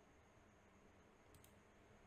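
Near silence, with a couple of faint computer mouse clicks close together about a second and a half in.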